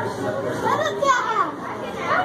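Children's voices and chatter, without clear words.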